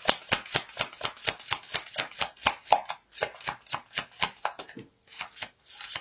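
A deck of oracle cards shuffled by hand: a quick, even run of sharp card slaps, about five a second, that breaks off about three-quarters of the way through, followed by a few sparser soft sounds as a card is drawn and laid down.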